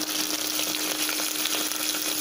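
Green chillies and bay leaves frying in hot coconut oil in a stainless steel pot: a steady sizzle with faint scattered crackles, over a low steady hum.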